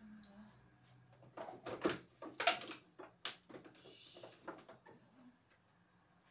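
Bottles and containers knocking and clattering against refrigerator shelves as things are moved around inside an open fridge. The clatters come in a quick cluster in the middle, followed by a short rustle, over a low steady hum.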